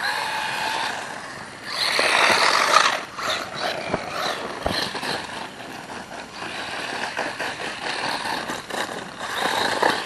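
Hosim Q903 1/16-scale brushless 4WD RC truck driving: a whine from its brushless motor and drivetrain over tyre noise on wet pavement and gravel. It is loudest about two seconds in, then rises and falls with the throttle.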